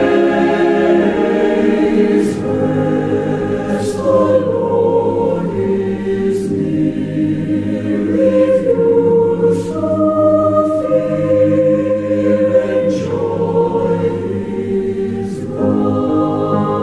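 A choir singing a slow song in held chords, the notes changing every second or two.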